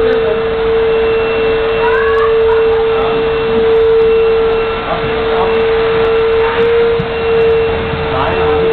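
A loud, steady hum held at one pitch, with faint voices in the background.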